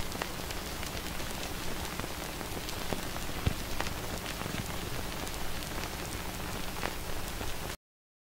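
Steady crackling hiss dotted with scattered clicks and pops, like old-film or worn-record surface noise. It cuts off suddenly near the end.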